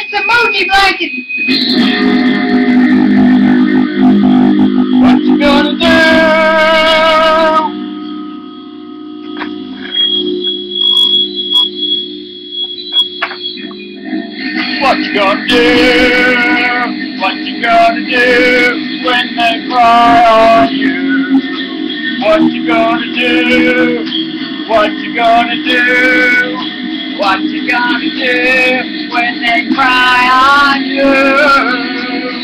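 Electric guitar playing: long held, wavering notes over a steady low drone, with a quieter stretch for a few seconds in the middle.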